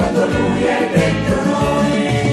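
A choir singing a Christian song with instrumental backing and a bass line that moves about twice a second.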